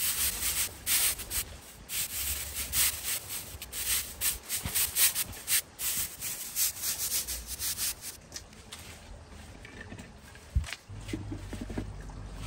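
A stiff natural-fibre broom sweeping a concrete patio: quick scratchy strokes, several a second, which die away about eight seconds in. A single knock follows near the end.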